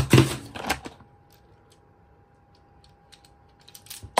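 Model subway cars clattering against each other and the plastic toolbox as one is dropped in: a quick cluster of clicks and knocks in the first second, then a few light clicks near the end.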